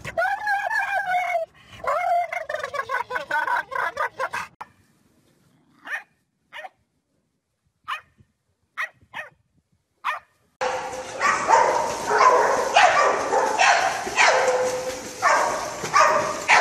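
A dog making a weird, drawn-out wavering vocal noise in two long stretches. After a stretch of near silence with a few faint clicks, loud water splashing follows from dogs thrashing in a pool.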